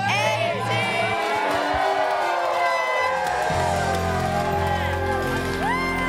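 A crowd cheering and whooping, many voices breaking out at once with rising and falling shouts. Music with steady held chords comes in under it about three and a half seconds in.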